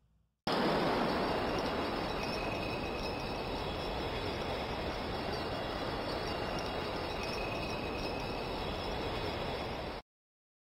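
A steady rushing noise with a few faint high tones in it. It starts abruptly about half a second in, eases slightly, and cuts off at the end.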